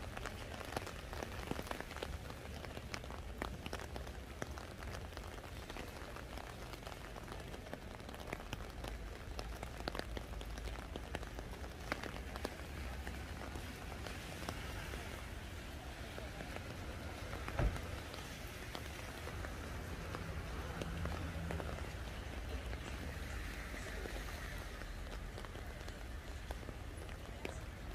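Steady rain falling on a wet street, with many individual drops ticking close by. A single sharp knock stands out about two-thirds of the way through.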